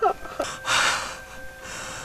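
A man gasping while weeping: one noisy, sharp in-breath just under a second in, then fainter breathing.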